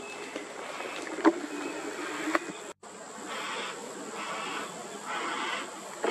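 Yellow-tailed black cockatoo chick giving repeated harsh begging calls, each about half a second long and coming just under a second apart, strongest in the second half. It is calling for its parent's attention. A single sharp click about a second in is the loudest sound.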